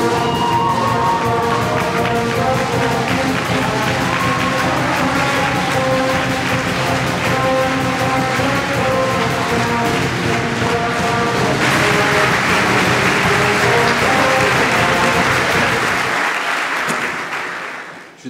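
A live brass band playing over continuous audience applause. About two-thirds of the way in the applause suddenly grows louder; the music stops about two seconds before the end, and the applause fades out.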